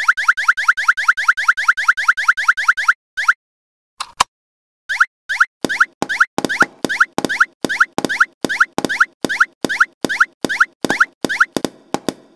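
Cartoon plop sound effects in quick succession, each a short rising blip: about seven a second for the first three seconds, then after a short pause a steadier run of about three a second as balls drop into the toy's holes.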